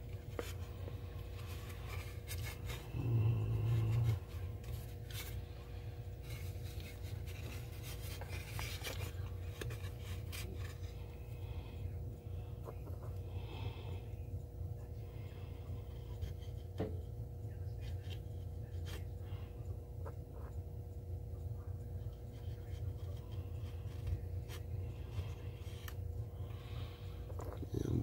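Faint scraping and small clicks of a thin split wooden stick working mixed JB Weld two-part epoxy, over a steady low hum, with a brief low bump about three seconds in.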